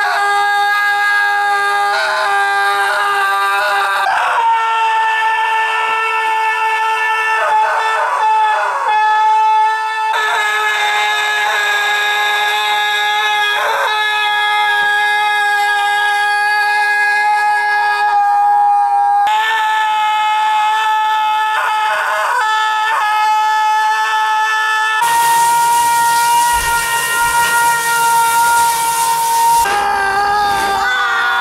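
A man screaming without stopping: one long, high, steady scream held on nearly the same pitch, shifting slightly in pitch every few seconds. A steady rush of noise joins it for the last few seconds.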